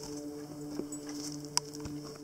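Blue pit bull gnawing on a piece of driftwood: scattered clicks and knocks of teeth on wood, the sharpest a little over a second and a half in, over a steady low drone.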